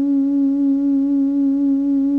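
Instrumental background music: one long held note with a slight waver.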